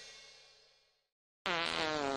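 Background music fading out in the first half second. About one and a half seconds in comes an edited-in comic sound effect: a low buzzing tone that wavers and dips in pitch, starting abruptly and lasting about a second.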